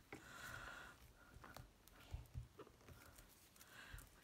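Near silence, with a few faint soft ticks and rustles from hands pressing a stamp block onto a notebook page.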